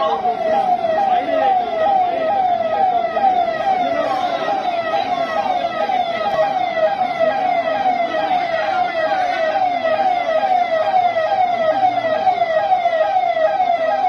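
Emergency vehicle's electronic siren sounding continuously in a fast repeating pattern, about three falling sweeps a second.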